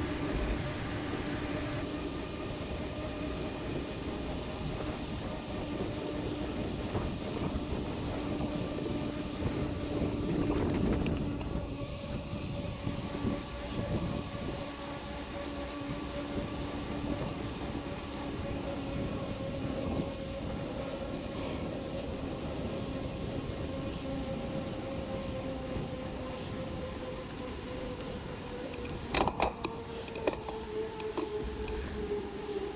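Sped-up audio of a bicycle ride on a paved trail: a steady rush of wind and tyre noise with a faint steady hum, and a few sharp clicks near the end.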